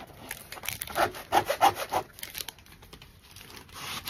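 Rubbing strokes on the back of a diamond painting canvas, pressed hard to work out a deep crease. The strokes come in a quick irregular run through the first two seconds or so, then grow fainter.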